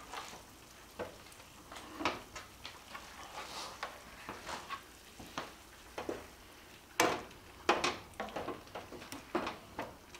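Slotted spoon scooping thick cream sauce in a skillet and ladling it over chicken thighs: soft scrapes, wet slops and light knocks against the pan, with a few sharper knocks about seven to eight seconds in.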